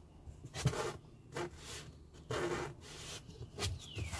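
Cardboard box being opened and handled: flaps and sides rubbing and scraping in a handful of short rustling bursts.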